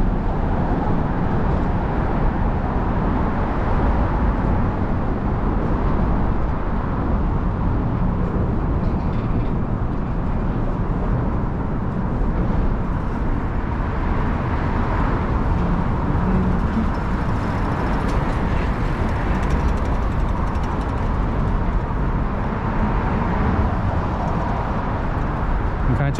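Steady, loud rumble of traffic crossing the Manhattan Bridge, a continuous roar heaviest in the low end with no breaks.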